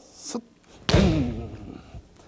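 A single kendo men strike about a second in: a sharp slap of the stamping step on the wooden dojo floor together with the hit, followed by a short shouted kiai. A few faint shuffles of the feet come before it.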